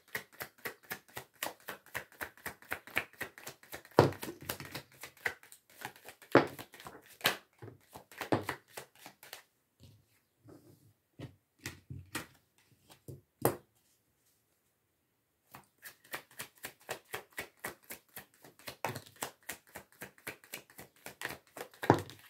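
Work Your Light oracle cards being shuffled by hand: a fast run of light clicks and flicks with a few louder snaps, stopping for a couple of seconds twice in the second half before starting again.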